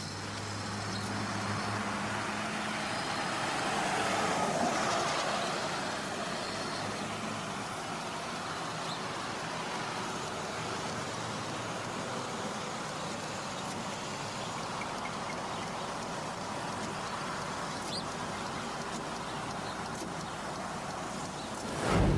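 Street traffic sound: a low engine hum for the first few seconds, a vehicle passing with a falling sweep about four to five seconds in, then a steady hiss of traffic. A short low thud right at the end.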